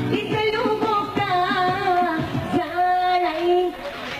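A woman singing a Bulgarian pop-folk song over music, with long held, wavering notes.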